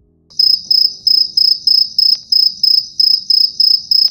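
Rapid, regular, high-pitched chirping, about four chirps a second, like a cricket's, starting sharply a moment in.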